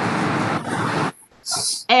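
A burst of noise on an earphone microphone, about a second long, followed by a brief high hiss just before speech resumes.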